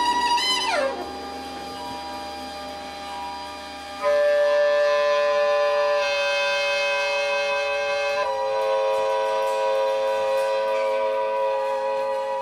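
Soprano saxophone in free improvisation: a high held note slides down and breaks off near the start. After a quieter stretch, a loud sustained chord of several pitches at once (a multiphonic) enters about four seconds in and changes pitch abruptly twice.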